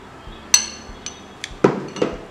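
Metal spoon clinking against a glass bowl while stirring a thick paste: a sharp, ringing clink about half a second in, then a few more, the loudest near the end.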